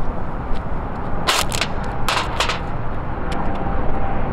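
Two quick volleys of sharp bangs, three or four cracks each, about a second apart, over a steady low wind rumble.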